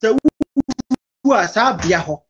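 A man's voice speaking over a video call, chopped into short fragments with dead gaps for the first second, then running on continuously.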